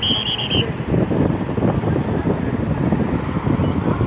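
A short, high whistle near the start, then a rough, steady outdoor din of a running Caterpillar 950E wheel loader mixed with wind on the microphone.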